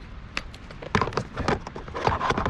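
A few sharp clicks and knocks of hard plastic cases being handled: a small choke-tube case snapped shut in the hands and the hard shotgun case touched. One click comes about half a second in, and a quick cluster of several follows around a second in.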